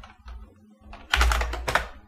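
Computer keyboard being typed on: a few keystrokes, then a quicker run of keystrokes about a second in as a short command is typed and entered.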